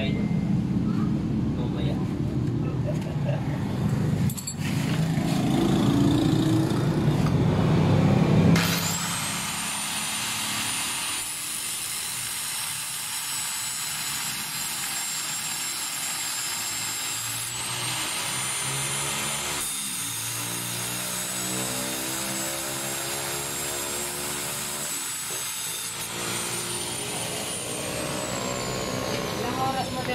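Electric hand power tool running with a high whine that rises and dips in pitch as it is worked, then falls away as it spins down near the end. The first eight seconds hold a louder low rumble.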